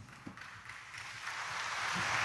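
Rustling and shuffling of a church congregation, growing steadily louder after a light tap about a quarter second in; typical of people rising from the pews after the homily.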